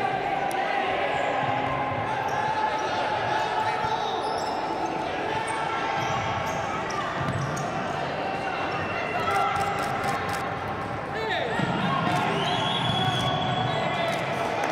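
Futsal play on a wooden indoor court: the ball being kicked and bouncing, shoes squeaking on the floor, and players calling out, all echoing in the large sports hall.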